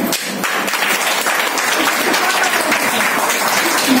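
Small audience applauding: steady hand clapping from a group of listeners that starts right at the beginning.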